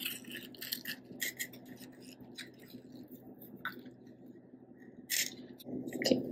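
Gloved hands working damp sphagnum moss: soft, scattered rustles and crackles as it is pressed around the top of a small plastic pot and pulled apart, with a louder rustle near the end.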